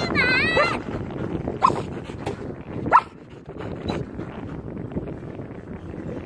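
A dog gives two short, high, rising yelps, about a second apart. They come over steady outdoor background noise, just after a snatch of music that ends within the first second.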